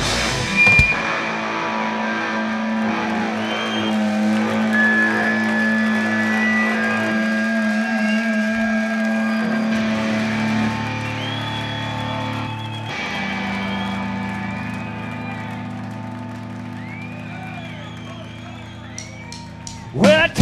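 A live rock band's electric guitars and keyboard hold a sustained, droning wash of chords after the drums stop about a second in, with a few sliding notes over it. It grows a little quieter toward the end.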